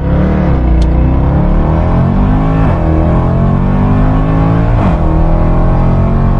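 Car engine accelerating hard up through the gears, its pitch climbing steadily and dropping at two gear changes, about two and a half and five seconds in.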